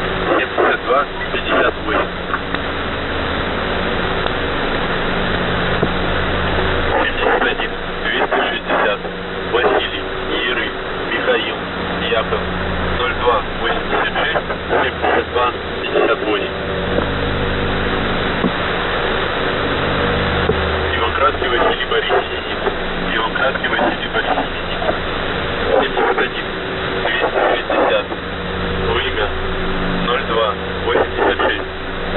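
Shortwave radio receiver tuned to The Pip's 3756 kHz channel between voice messages: steady hiss full of crackles of atmospheric static, with a low droning hum that fades in and out in stretches of a few seconds.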